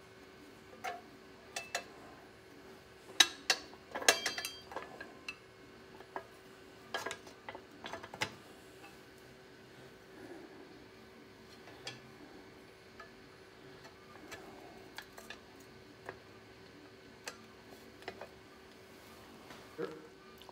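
Light clicks and clinks of powder-coated metal pedal-car steering brackets being handled and fitted onto the frame, busiest in the first eight seconds and sparse after, over a faint steady hum.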